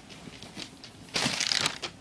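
Close rustling and rubbing against the microphone: a quiet first second, then a noisy burst a little under a second long as the phone is handled.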